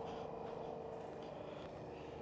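Quiet outdoor background: a low steady hiss with a faint steady hum, and a few soft, barely audible scuffs.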